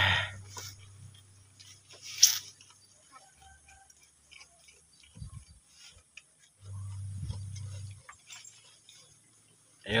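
Goats feeding on fresh leafy forage: faint rustling and chewing of leaves, with one brief loud crackle about two seconds in and a low steady hum for over a second around seven seconds in.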